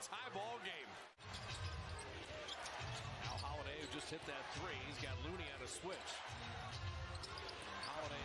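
Faint NBA broadcast audio: a basketball being dribbled on a hardwood court, over arena crowd noise and a commentator's voice. The sound drops out for an instant about a second in.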